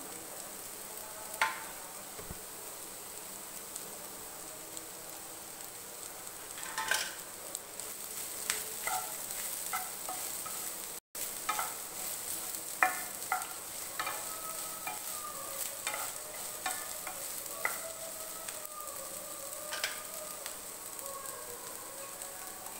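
Onions and boiled potato pieces frying in a nonstick pan with a steady sizzle. A wooden spatula stirs them, and its scrapes and knocks against the pan come in scattered clicks that grow busier after the middle.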